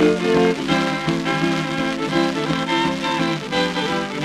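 Instrumental passage from a 1928 Victor 78 rpm record of a song with guitar accompaniment: held notes over a steady strummed beat, changing to a new phrase about half a second in.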